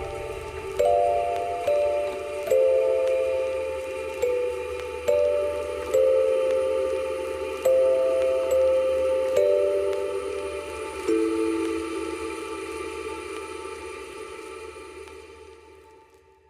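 Wind-up music box movement, its pinned cylinder plucking the steel comb: a slow tinkling melody of ringing notes, often two at a time, about one a second. It fades out over the last few seconds.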